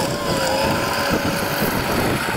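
Cat 953C track loader working dirt, its diesel engine running steadily under load with a constant, slightly wavering whine.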